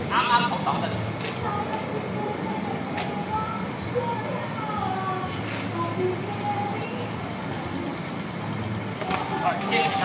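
A few short, sharp clacks of simulated sparring swords striking, spread through the stretch, over faint background talk and a steady low rumble of city noise.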